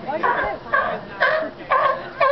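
Sea lion barking in a steady series of short, pitched barks, about two a second.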